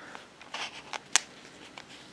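Thin disposable plastic cup full of soil crackling faintly in the fingers as it is turned, with a few small clicks and one sharper click about halfway through.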